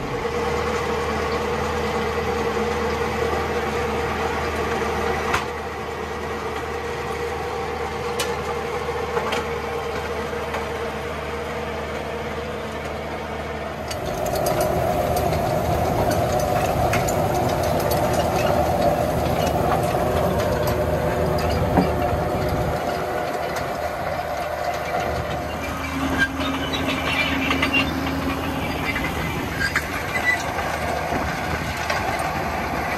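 Fendt 714 tractor's diesel engine running steadily under load while pulling a power harrow and Fiona seed drill, heard first from inside the cab and, about halfway through, from outside beside the working implement, where it is louder. Some rattling of the machinery comes in near the end.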